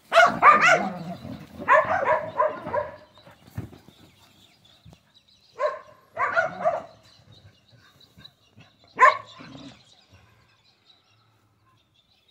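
Dingoes making high-pitched vocal calls while playing, in three bursts: a run of calls over the first three seconds, another around six seconds, and a single short one about nine seconds in.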